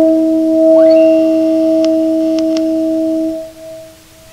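A sustained electric guitar note, sounded with a cello bow, rings steadily as a nearly pure tone and then dies away about three and a half seconds in. A faint upward glide sounds about a second in, and three light ticks follow around two seconds in.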